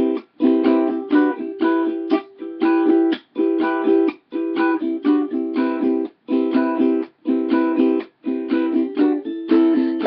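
Ukulele strumming chords in a steady rhythm, each chord group broken by a brief silent gap about once a second.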